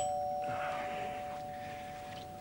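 Two-tone ding-dong doorbell chime: a high note and then a lower note, both ringing on and slowly fading.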